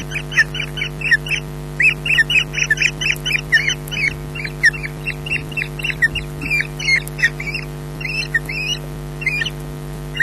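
Osprey calling at the nest: runs of short, high chirping calls, about four a second, with brief pauses between runs.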